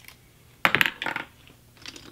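Small hard objects being handled at a tabletop: a quick clatter of sharp clicks about half a second in, a second shorter cluster just after, and a few faint clicks near the end.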